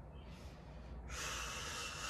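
A woman breathing hard from exertion, a long breathy exhale starting about a second in.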